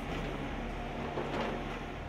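Tree-spade transplanting machine running, a steady low mechanical hum with a rougher noise over it.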